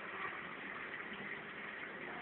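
Steady watery hiss of a marine aquarium's water circulation and filtration running.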